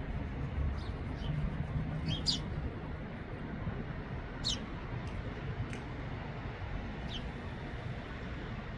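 Small birds giving scattered short, high chirps, each sliding quickly downward in pitch, about seven in all, over a steady low background rumble.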